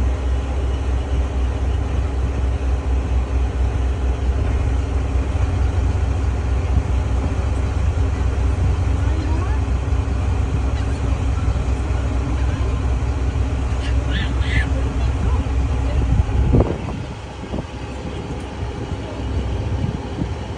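Boat engine running steadily at low speed, a deep even drone; about three-quarters of the way through the drone drops away abruptly.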